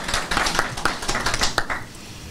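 Handling noise from a tabletop microphone on a small tripod stand: a rapid, irregular run of knocks and clicks as hands grip and adjust it.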